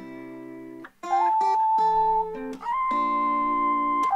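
Beat playback: an acoustic guitar loop in D minor, joined about a second in by a vocal chop pitched up an octave, holding long high notes over the guitar.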